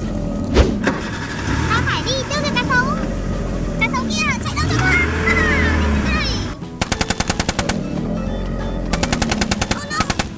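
Toy tank machine-gun sound effect: two quick bursts of rapid fire, each about a second long, in the second half. Before the bursts there are squeaky, gliding cartoon-like sounds.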